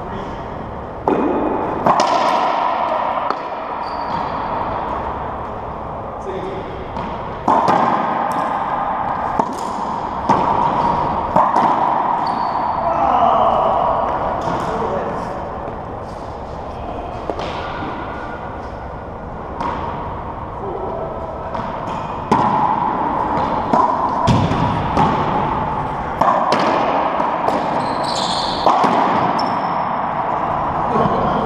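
Racquetball rally: the rubber ball cracks off racquets, the walls and the hardwood floor in irregular sharp hits, each ringing briefly in the enclosed court.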